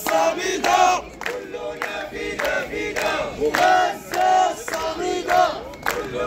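A crowd of men chanting a slogan in unison in a steady rhythm, with hand claps between the shouted phrases.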